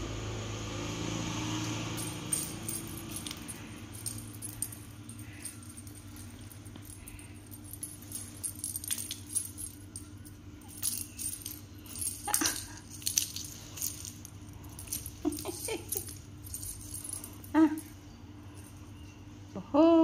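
Intermittent light jingling and rattling from a cat's string-and-wand feather toy as it is dangled and jiggled, with scattered short clicks, the sharpest about twelve seconds in and near the end.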